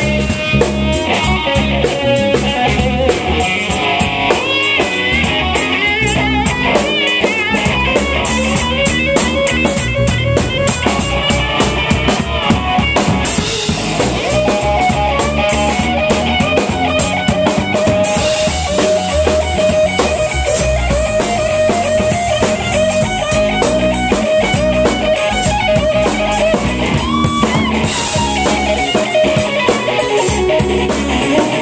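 Live blues band in an instrumental stretch: electric guitar soloing with bent, wavering notes over electric bass and a drum kit. In the second half the guitar holds one long sustained note.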